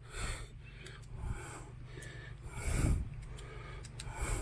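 A few short puffs of breath, the loudest near three seconds in, over a low rumble of handling noise while a clamp-on underhood work light is fitted to the lip of a truck hood.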